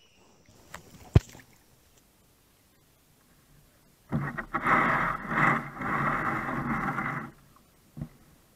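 A kayak knocks sharply once against a tree about a second in. About four seconds in comes a loud, rough rushing noise that lasts about three seconds and cuts off suddenly.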